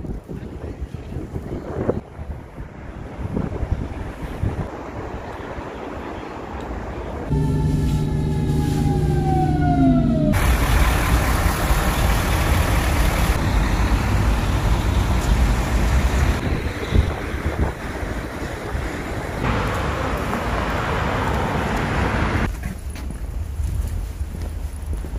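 Street ambience in several short cuts of traffic noise. About seven seconds in, a pitched tone with overtones falls steadily for some three seconds and cuts off. It is followed by loud, steady rushing noise.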